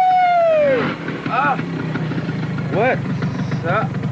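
A man's long, high drawn-out vocal call that falls away about a second in, then a few short yelping calls, over the low steady hum of a motor scooter idling.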